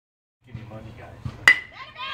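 Baseball bat hitting a pitched ball: one sharp crack with a short ringing ping, about a second and a half in.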